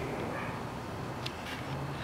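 Steady low background noise with no distinct source, and a faint tick a little past the middle.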